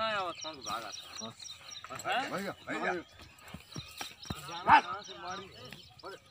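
Short shouted calls from people, several in a row, each rising and falling in pitch, the loudest about three quarters of the way through.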